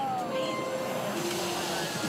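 A drawn-out voice with a slowly falling pitch that fades about half a second in, followed by lower held tones, over steady crowd background.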